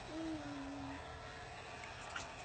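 Husky giving one short howl, about a second long, its pitch held low and sliding slightly down.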